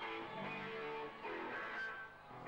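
Electric guitar playing a few held chords, each ringing for about half a second to a second before the next.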